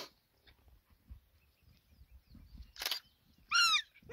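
Spotted hyena cub giving one short, high squeal near the end, its pitch arching downward. A brief hiss-like rush of noise comes just before it.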